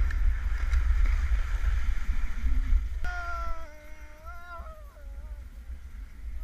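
Wind rumbling heavily on the microphone of an action camera riding down a snowboard run. About halfway through, a long wavering high-pitched call runs over it for a couple of seconds.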